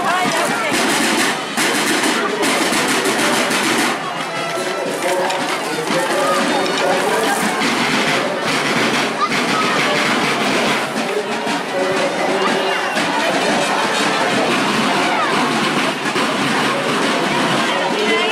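Marching snare drums played by a school drum corps, with dense drumming strongest in the first four seconds. The chatter of a street crowd runs underneath.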